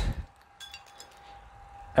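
Faint metallic clinks of a dip belt's steel chain and carabiner against a cast-iron weight plate as the plate is hung from the belt, a few light clinks about half a second in.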